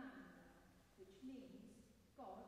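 Faint speech: a woman reading aloud in a reverberant church, pausing briefly near the end.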